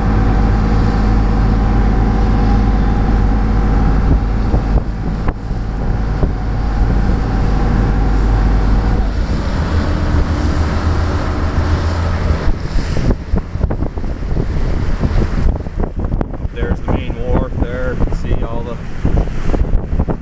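Lobster boat's diesel engine running steadily. Its note changes about nine seconds in and drops away a few seconds later. For the rest, gusty wind buffets the microphone.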